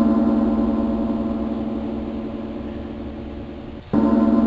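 A gong rings with a deep, steady tone and slowly fades. It is struck again at the very end.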